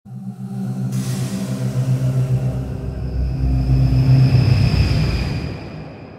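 Logo intro sting: music with a deep rumble and a whooshing hiss that comes in about a second in, swells to its loudest around four seconds, then fades away near the end.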